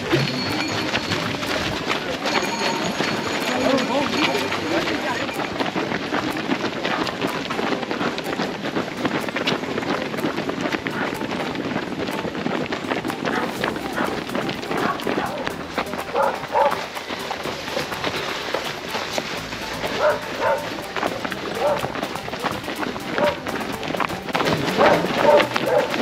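Many runners' footsteps on a road, with chatter from the runners around.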